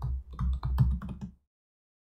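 Typing on a computer keyboard: a quick run of keystrokes that stops a little past halfway.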